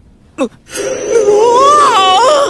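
A young woman's high-pitched, drawn-out moan with a wavering pitch, after a short "un" sound about half a second in.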